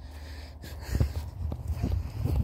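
Footsteps on grass, a few soft thuds, the firmest about a second in, over a steady low rumble on the phone's microphone.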